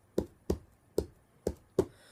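Hands tapping out a rhythm on a book used as a drum, five short knocks with a dull low thud, keeping the beat between sung lines of an a cappella song.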